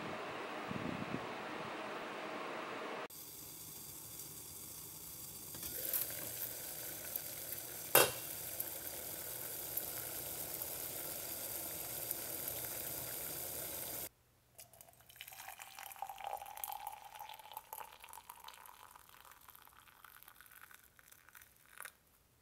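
A steady rushing noise, then a lidded pot boiling on an electric stove burner: a steady hiss of steam, with one sharp clink about eight seconds in. After about fourteen seconds it drops to faint, scattered clinks and taps.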